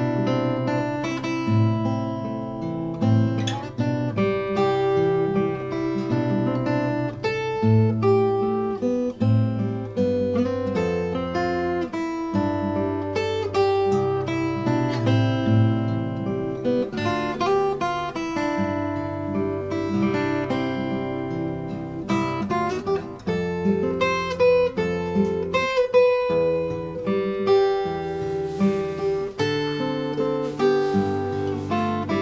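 Solo steel-string acoustic guitar played fingerstyle: a picked melody over low bass notes, with notes plucked in a steady flowing run throughout.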